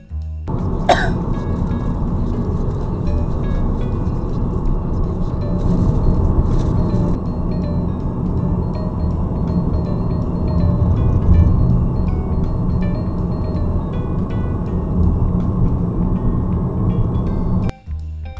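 Loud, steady road and engine noise inside a moving car, as picked up by a dashcam microphone, with background music faint underneath. A short sharp sound comes about a second in.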